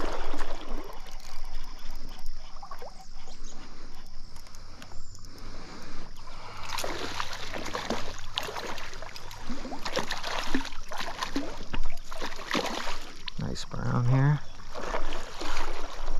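Stream water running, with splashes and knocks that grow busier about six and a half seconds in as a hooked trout is played. A short low vocal sound comes near the end.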